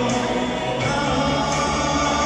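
Music: a man singing into a microphone over a recorded backing track, both heard through a PA speaker.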